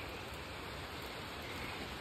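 Rain falling steadily on a wet concrete rooftop, a soft, even hiss.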